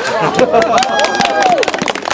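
Several people's voices calling out, over a rapid scatter of sharp clicks.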